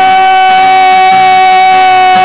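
A man's voice belting one long, steady high note over acoustic guitar, held without a break.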